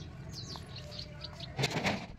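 Small birds chirping in the background, short high falling calls, with a loud burst of noise lasting under half a second near the end.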